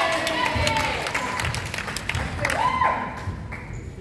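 Spectators clapping and calling out from the sideline, cheering a good play. Sharp claps come over the first couple of seconds, with a drawn-out shout a little under three seconds in.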